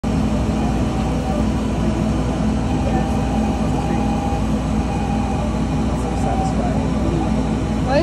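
Epilog laser cutter running while cutting, a steady hum with a rush of air from its exhaust and air-assist fans.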